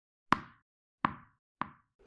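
Sound effect of a tennis ball bouncing: three bounces, each quieter and sooner after the last, as the ball settles.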